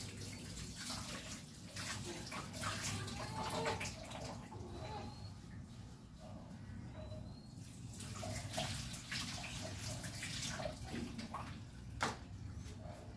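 Water running and splashing in a kitchen sink as dishes are washed by hand, with scattered light clinks of dishes and utensils.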